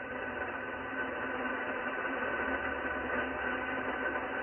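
Icom IC-746PRO HF transceiver receiving lower sideband on 7.200 MHz with no station transmitting: steady band noise (static hiss) from its speaker, with a few faint steady whistles under it.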